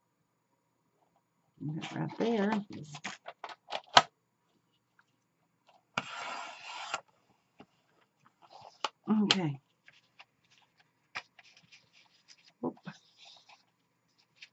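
A sliding paper trimmer's blade drawn through cardstock, an even cutting noise about a second long halfway through. Around it are clicks and taps of the trimmer and paper being handled, the loudest a sharp click about four seconds in.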